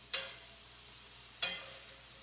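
Sliced mushrooms frying with a faint sizzle in a skillet that is getting a little dry, and a spoon stirring them, scraping the pan twice: once near the start and again about a second later.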